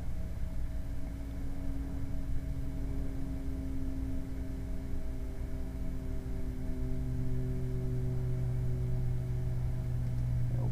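Steady low background hum with a few faint held tones above it. A deeper, stronger tone joins about seven seconds in.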